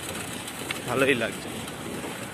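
A single spoken word about a second in, over a steady outdoor background hiss.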